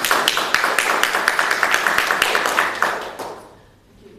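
Audience applauding, many hands clapping quickly, the applause dying away about three seconds in.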